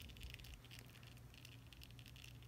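Near silence with faint light clicks and rubbing from a small plastic action figure's hand being turned at its wrist joint, mostly in the first second.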